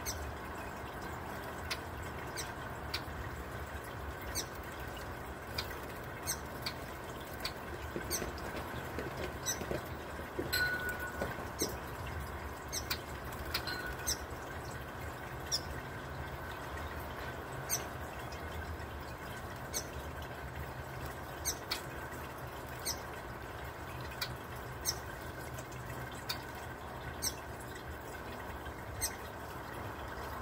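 Small bowl fountain trickling steadily as water bubbles over a ball-shaped fountain head, with short, high bird chirps repeating every second or so. Occasional small splashes come from a young hooded oriole bathing in the bowl.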